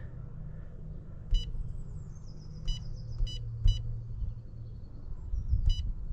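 Touch-screen control panel of a Thermotec heat pump beeping as keys are pressed to enter an access code: five short electronic beeps at uneven intervals, over a steady low hum.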